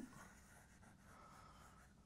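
Near silence, with faint chalk scratching on a blackboard in the second half.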